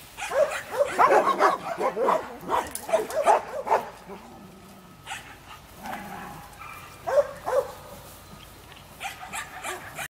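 A dog barking in a quick run of short barks for the first four seconds or so, then a couple more barks about seven seconds in and a few near the end.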